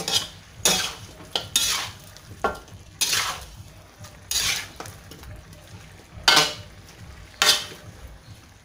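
Spatula stirring chicken pieces in a wok, scraping the pan in separate strokes about once a second.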